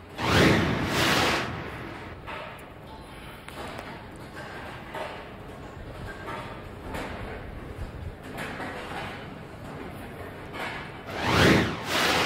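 Two TV broadcast whoosh transition effects, one at the start and one about a second before the end, each swelling and fading over about a second and marking the wipe into and out of an instant replay; between them a quieter steady background.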